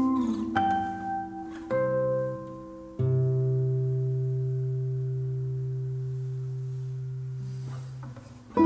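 Two classical nylon-string guitars playing a slow passage. A few plucked notes and chords come first, then about three seconds in a low chord is struck and left to ring, slowly fading.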